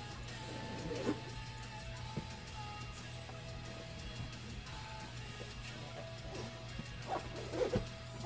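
Faint background music with soft held notes over a low steady hum. A cardboard box being handled gives a few soft knocks, about a second in and again near the end.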